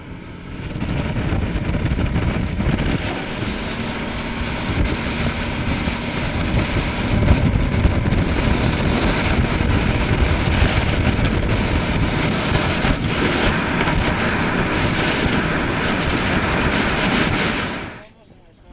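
Rigid inflatable dive boat running at speed: a loud, steady rush of motor noise mixed with wind buffeting the microphone, rising sharply about a second in.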